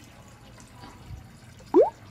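Faint drips and small splashes of water in a plastic jar as a hand puts a small cará fish into it. Near the end there is a short, loud chirp that sweeps up in pitch.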